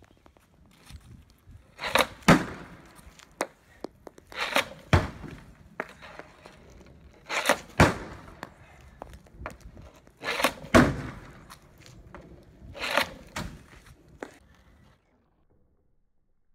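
Hockey snap shots taken off a plastic shooting board: five shots about two and a half seconds apart, each a quick double crack of the stick blade and puck slapping off the board.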